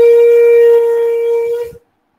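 A loud, steady tone held at one pitch with a row of overtones, which cuts off suddenly near the end into dead silence.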